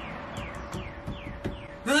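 A bird calling: a series of short, falling whistled notes, about three a second, over a faint steady hum.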